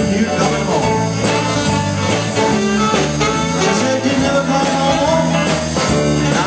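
Live blues band playing electric guitars over a drum kit, with a steady beat.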